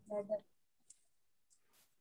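A child's voice briefly at the start, then near silence broken by a few faint clicks in a small classroom.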